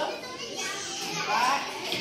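Young children's voices: two short high-pitched utterances, one right at the start and another about a second and a half in, over classroom background noise.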